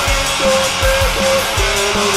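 Instrumental stretch of a post-hardcore rock song, with no singing. Distorted electric guitars play a held lead melody over drums with a steady kick beat.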